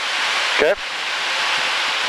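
Steady rushing noise of airflow and jet engine inside the cockpit of an L-39 jet trainer in flight.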